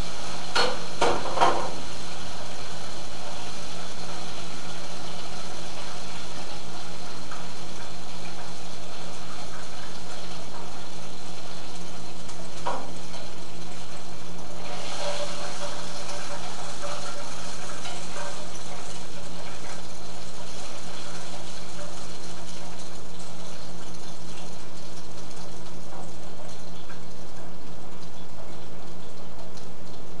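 Battered whiting pieces frying in hot oil: a steady sizzle, with a few clinks of a utensil near the start and another about thirteen seconds in. The sizzle grows brighter about fifteen seconds in.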